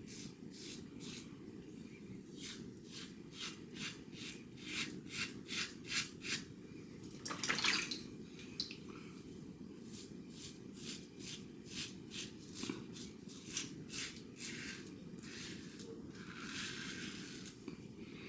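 A steel open-comb safety razor with a Gillette Red blade scraping through lathered facial stubble in short strokes, about three a second. The strokes come in two runs, with a brief louder noise between them about halfway through.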